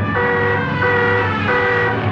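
Wall-mounted alarm klaxon blaring in repeated blasts on one steady pitch, a little more than one blast a second.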